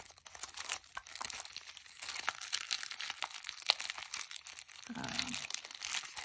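Clear plastic packaging of a sheet of clear stamps crinkling and crackling as it is handled and flexed, a dense run of small crackles. A brief spoken "uh" near the end.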